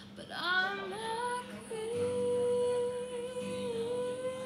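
Woman singing: a short rising phrase that settles, about a second and a half in, into one long held note, over soft acoustic guitar strumming.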